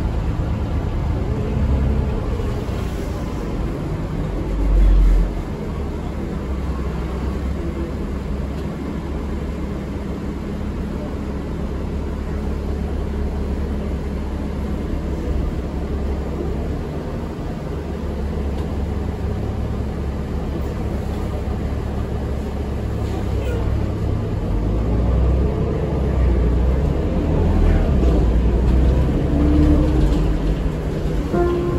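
Interior of a 2006 New Flyer D40LF city bus under way: steady diesel engine drone and road rumble, with a short low thump about five seconds in. The engine grows louder near the end.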